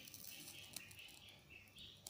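Near silence: room tone, with a few faint soft ticks about three-quarters of a second in.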